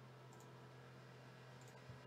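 Near silence: a few faint clicks at a computer desk, over a steady low hum.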